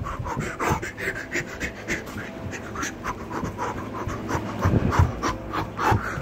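A person panting hard in quick, rhythmic breaths while running.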